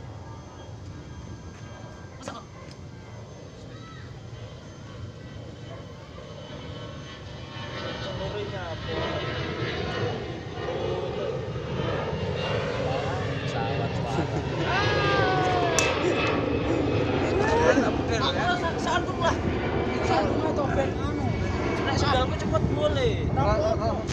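A steady low rumble under men's voices. The rumble sounds like a distant engine. The talking starts about a third of the way in, and the sound grows louder from there.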